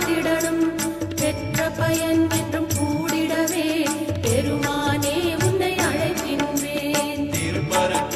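A Hindu devotional song to Murugan of the kind sung at Cavadee (Kavadi), played with a steady drum beat under a wavering melodic line.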